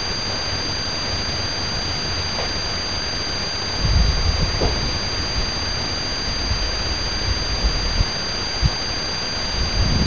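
Wind buffeting an outdoor camera microphone in irregular low rumbling gusts, strongest about four seconds in, over a steady hiss with a constant high-pitched whine.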